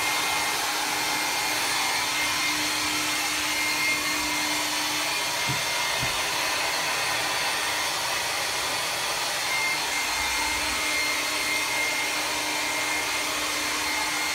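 Hand-held hair dryer running steadily, a constant rush of air with a thin, steady high whine.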